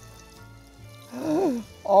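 Breadcrumbed rice balls deep-frying in hot vegetable oil: a faint, steady sizzle of bubbling oil. A man's drawn-out exclamation rises and falls about halfway through, and another starts near the end.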